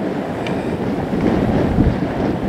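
Strong wind blowing across the microphone: a loud, steady low rumble.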